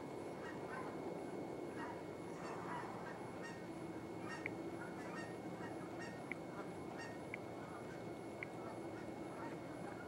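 A flock of geese honking, a steady, fairly faint chorus of many overlapping calls, with a few short sharp ticks in the second half.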